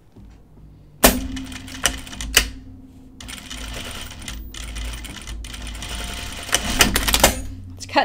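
Juki industrial sewing machine stitching a seam through cotton fabric. It starts with a sharp click about a second in, runs steadily for about six seconds with a couple more clicks near the start, then stops.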